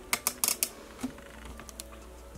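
Light clicks and taps of small hard objects being handled: a quick run of them in the first moment, one more about a second in, and a couple of faint ones near the end.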